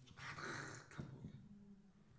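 Dry-erase marker squeaking and scratching on a whiteboard as a line is written, for most of the first second, followed by a short tap of the marker on the board about a second in.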